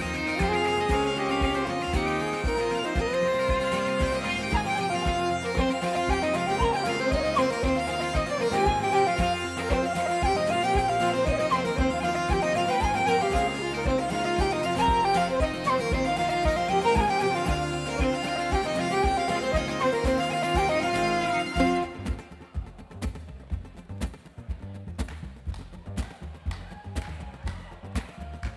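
Live folk band playing a tune led by bagpipes, with fiddle, flute and double bass. About 22 seconds in the pipes and melody suddenly drop out, leaving a quieter, pulsing rhythm of acoustic guitar and double bass.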